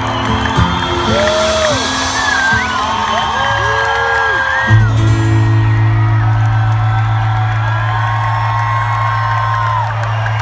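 Live rock band holding out a song's final chord through the PA, with the crowd whooping and cheering over it. A hit about halfway through, after which a low note rings on.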